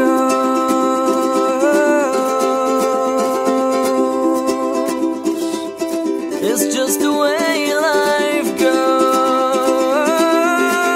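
Ukulele strummed steadily in an acoustic song, with a man's wordless sung melody, long held notes with a slight waver, over the strings.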